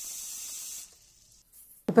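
Tap water running in a steady hiss into a steel pot of basmati rice to rinse it. The flow cuts off suddenly about a second in.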